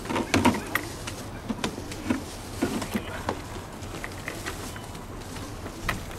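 Spinning fishing reel being cranked, a light mechanical whir with scattered small clicks.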